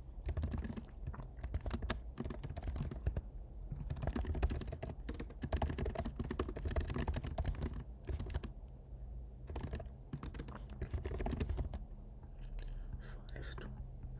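Fast typing on a computer keyboard: runs of quick key clicks, with a short pause about eight seconds in and lighter typing near the end.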